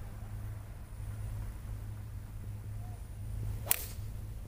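A golf tee shot: a single sharp crack of the club head striking the ball near the end, over a steady low background hum.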